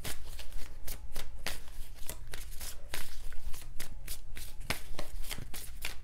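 A deck of tarot cards being shuffled by hand: a steady run of quick, irregular card snaps and flicks.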